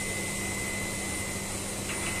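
Steady din of ash-handling plant machinery: a constant hum with a high whine over a rushing hiss while fly ash pours from a hopper chute onto a pile.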